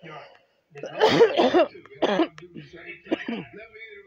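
A person coughing and clearing their throat in a small room, with faint voices behind.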